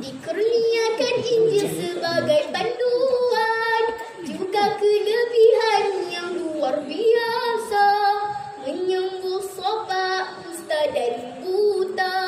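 A young girl singing a melody solo into a microphone, holding long notes with a slight waver and pausing briefly for breath between phrases.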